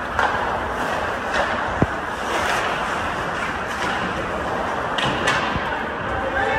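Ice hockey play in an indoor rink: a steady scraping wash of skates on the ice, broken by a few sharp clacks of sticks on the puck, the loudest about two seconds in and two more close together near the end.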